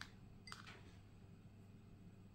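Near silence: a steady low room hum with two faint short clicks, one at the very start and another about half a second in.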